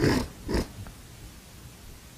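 A man breathing in sharply twice through the nose, about half a second apart, close to a microphone. Low room tone follows.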